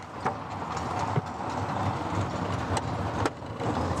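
Ride noise inside an open, canopied sightseeing vehicle moving through city streets: a steady rumble of tyres and running gear, with a few light knocks and rattles.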